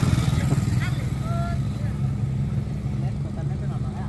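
Small four-stroke engine of an underbone motorbike running steadily close by, a low even hum, with a few brief voices about a second in.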